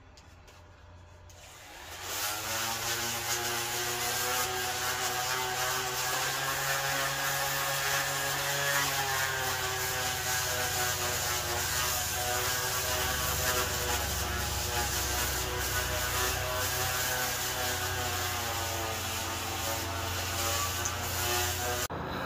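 Electric random orbital sander with 80-grit paper running against dry arbutus wood. It starts about two seconds in and holds a steady motor hum with a whining overtone and a sanding hiss, its pitch wavering slightly as it is pressed on the wood.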